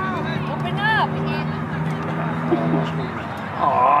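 Short calls and shouts from people across an open soccer field, over a steady low hum that stops about three seconds in. A close male voice says 'Oh' near the end.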